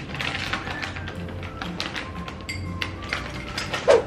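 Background music with a light tapping beat, with a brief louder accent just before the end.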